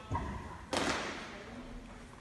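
Drill squad's feet stamping together on a sports-hall floor: a sharp stamp with a ringing hall echo about three quarters of a second in, after a softer thud at the start.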